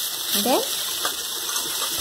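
Dried fish curry paste sizzling steadily in oil in a kadhai while a spatula stirs it.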